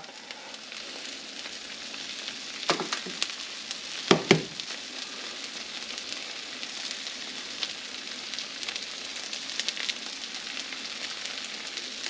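Cheese sizzling steadily on the hot plates of two Dash mini waffle makers as chaffles cook. Two brief knocks come about 3 and 4 seconds in.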